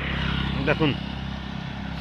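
Motorcycle engine running as it passes on the road, a steady low hum that swells slightly in the first half.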